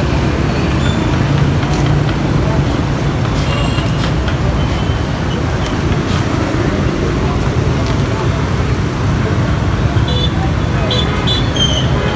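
Steady low rumble of street traffic, with people talking in the background.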